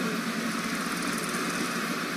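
Steady background noise of a large, crowded hall with no one speaking: a continuous, even hiss and hum.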